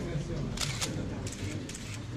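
Still-camera shutters clicking about five times in quick, separate clicks over a low murmur of voices.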